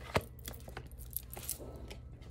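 Light clicks and small rattles of handling, with one sharper click just after the start the loudest, then scattered fainter ticks.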